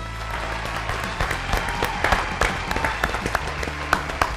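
Hand clapping and applause over background music with a steady bass line, starting abruptly.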